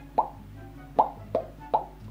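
Playful background music of short, bubbly plop-like notes, four of them, over a low steady hum.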